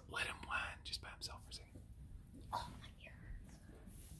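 Quiet whispering: short breathy whispered words in the first second and a half and again about two and a half seconds in.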